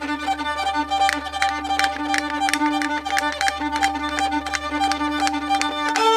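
Solo violin playing a lively folk-style tune, with a low note held steadily underneath a quick bowed melody.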